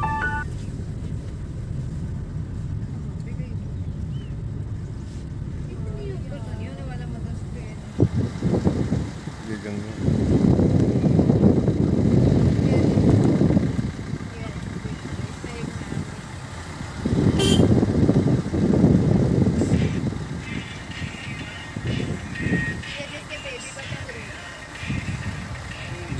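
A car drives slowly along a narrow country road, its engine and road rumble heard low and steady from inside the cabin. Twice, for a few seconds each, a louder rushing noise comes in over it.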